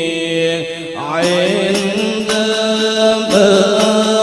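Voices chanting a devotional song in unison, with long held notes that shift slowly in pitch and a short break about a second in.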